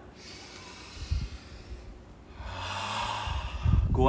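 A man breathing deeply close to the microphone in a breathwork exercise: a soft inhale, then from about halfway a louder, forceful exhale through the mouth, a detoxifying breath. Low thumps on the microphone come with it, loudest near the end.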